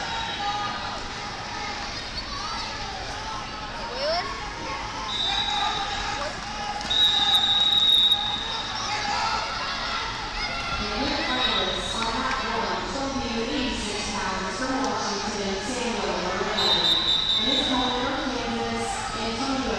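Crowd chatter from many voices in a large echoing gym, with several steady high tones lasting about a second each; the loudest and longest comes about seven seconds in.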